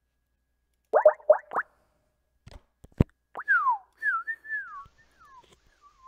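Skype group-call sounds as the call connects: four quick rising chirps about a second in, a sharp click, then a pure, wavering whistle-like tone that slides downward over the last two and a half seconds.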